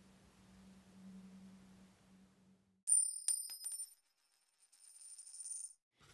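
Faint room hum, then about three seconds in a sudden bright metallic ringing of coins with a few sharp clinks, which dies away after about three seconds.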